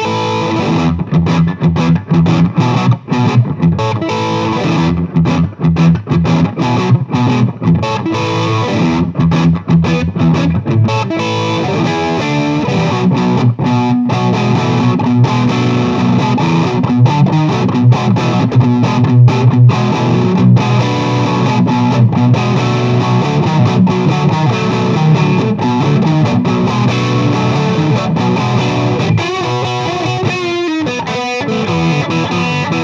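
Gibson Custom Shop 1959 Flying V reissue electric guitar played through an amplifier on the middle pickup setting, both humbuckers together. It opens with choppy, short notes and gaps between them, then moves into fuller, sustained playing after about twelve seconds.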